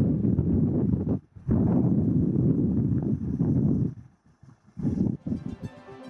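Low, even wind and road noise on the microphone, broken off abruptly twice by cuts. Faint background music comes in near the end.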